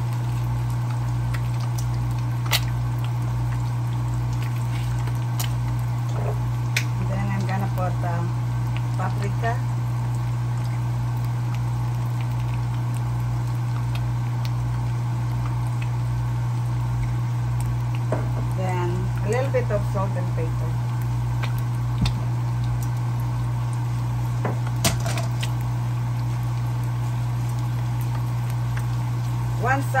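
Cubed Yukon potatoes frying in butter and olive oil in a nonstick skillet: a steady sizzle over a constant low hum, with a few sharp clicks.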